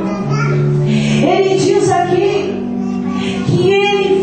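A woman singing a worship song through a microphone, backed by held keyboard chords.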